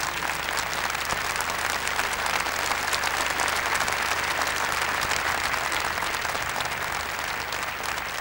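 Large crowd applauding steadily with dense, even clapping, in response to the pope's declaration of the new saints.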